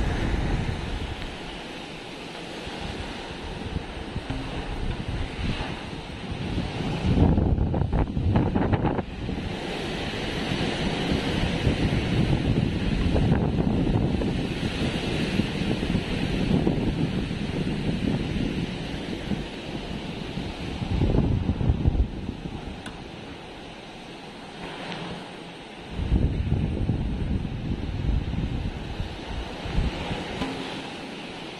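Typhoon wind gusting in surges, rising and falling, with the strongest gusts about a quarter of the way in, two-thirds of the way in and near the end.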